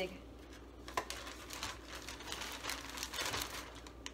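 Clear plastic bag crinkling and rustling as pancakes are handled in it, with a sharp click about a second in.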